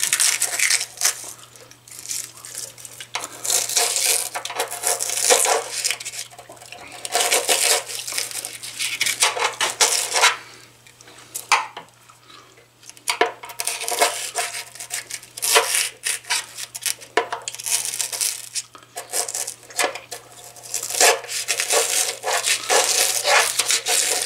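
A thin metal tool scraping, prying and tapping at the packing in the anode-rod port on top of a steel electric water heater tank, in irregular bursts of scrapes and clicks with a pause of about two seconds midway. The packing is being dug out to expose the anode rod's nut. A faint steady low hum runs underneath.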